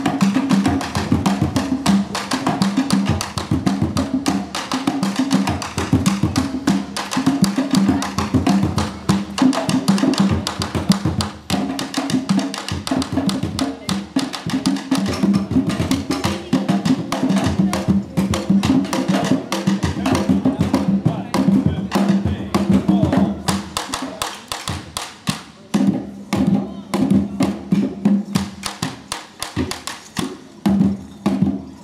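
Candombe drums played live with hand and stick: a fast, dense rhythm of deep drum strokes mixed with sharp wooden clicks of the stick on the drum shell. The playing thins out near the end.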